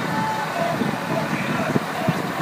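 Overlapping voices of a group of teenagers talking outdoors, in short broken snatches.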